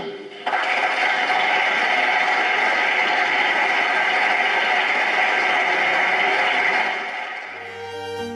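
Applause from a chamber full of parliament members: many people clapping together, starting suddenly about half a second in and holding steady, then dying away near the end as music comes in.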